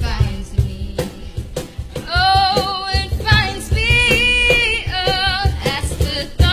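A Christian worship song: a female lead vocal sings held, wavering notes over a band with a steady drum beat.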